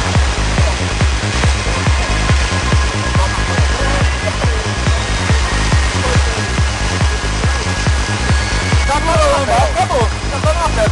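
Electronic dance music with a steady, fast bass beat, and voices coming in near the end.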